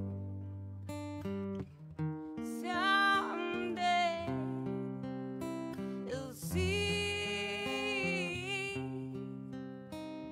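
Acoustic guitar playing with a woman singing over it; she holds a long, wavering note from about six and a half seconds in.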